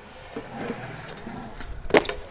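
Faint background murmur, then one sharp clack near the end as a stunt scooter hits the concrete.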